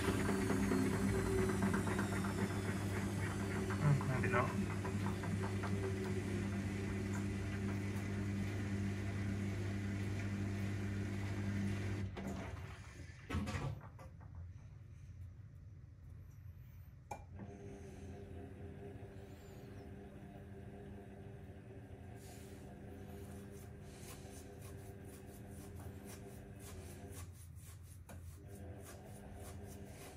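AEG Öko-Lavamat 6955 front-loading washing machine with its motor running as the drum turns, a faint high whine falling in pitch over the first few seconds. The sound drops away about twelve seconds in and a short knock follows. From about seventeen seconds a quieter motor hum with faint regular ticks goes on as the drum slowly tumbles the wet washing ahead of the final 1500 rpm spin.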